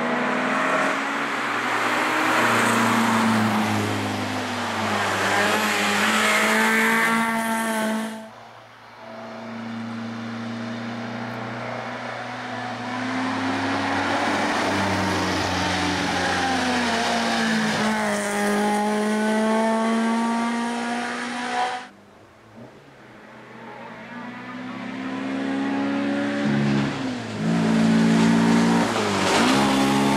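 Race car engines revving hard and changing gear as cars drive up the course and pass close by. It comes in three separate takes, with abrupt cuts about 8 and 22 seconds in.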